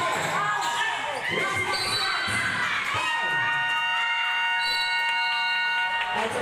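Basketball game in a large hall: ball bouncing and players and crowd calling out. About halfway through, a steady electric buzzer sounds for about three seconds, as a game buzzer does to stop play.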